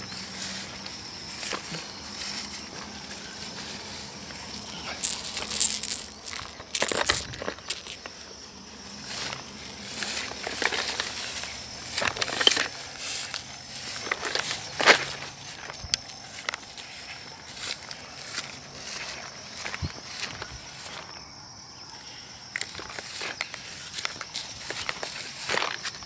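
Footsteps and rustling through tall grass and brush, a run of irregular crunches and swishes over a steady outdoor hiss.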